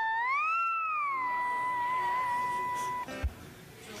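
Hawaiian lap steel guitar playing a single high note in a sliding glissando: the pitch swoops up, eases back down and is held with a slight vibrato. It stops about three seconds in, followed by a short thump.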